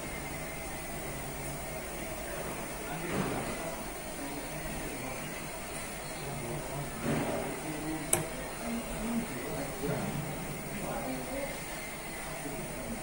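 Indistinct background voices, too faint or distant to make out, with a single sharp click about eight seconds in.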